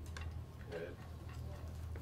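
Quiet room tone in a pause between speech: a steady low hum, a couple of faint clicks near the start, and a brief faint murmur of a voice a little before halfway.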